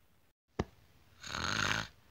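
One snore from a person imitating a sleeping character, rough and under a second long, starting about a second in. It comes just after a brief click.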